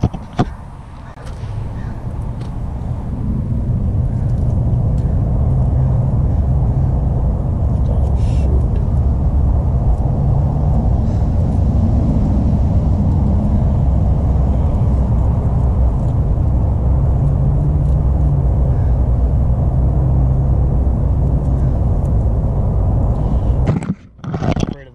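A motor vehicle's engine running steadily: a low rumble with a held hum that swells over the first few seconds, then stays even.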